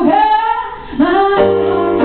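A woman singing live over sustained keyboard chords; the music thins out briefly just before the middle, then a new note and chord come in.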